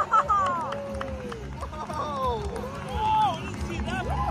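Jet ski engine revving in quick rising and falling swells as it speeds across the water throwing spray.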